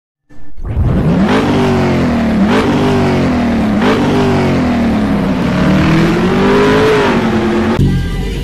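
Car engine revving hard through the gears: its pitch climbs and drops sharply three times in quick succession, then sinks and rises again more slowly before easing off near the end.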